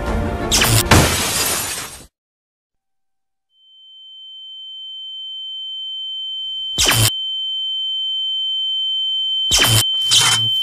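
Sound effects: a loud crackling electrical blast with sharp cracks cuts off abruptly about two seconds in. After a short silence, a steady high-pitched ringing tone swells in and keeps growing louder, broken by two sharp knocks near the end.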